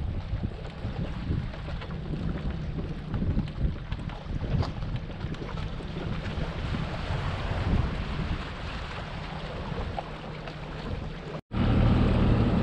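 A 250-horsepower outboard idling as the bass boat eases off the launch ramp, with wind buffeting the microphone. The sound cuts out for an instant near the end.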